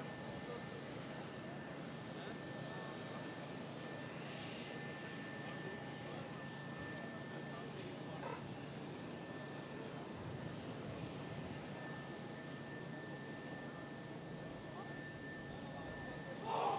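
Parked jet aircraft running on the apron: an even, unbroken noise with a steady high whine over it.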